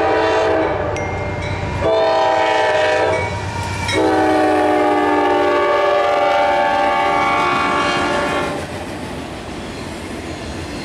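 Nathan K5LA five-chime air horn on a Norfolk Southern GE AC44C6M locomotive sounding the end of a grade-crossing signal: the close of one blast, a shorter blast, then a long blast held for about four seconds as the locomotive passes. When the horn stops, the freight train's wheels rumble and clack over the rails.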